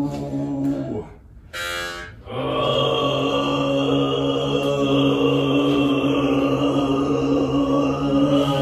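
Overtone singing: a steady low vocal drone with a high, whistle-like overtone held above it. The drone breaks off briefly about a second in, then resumes on the same pitch.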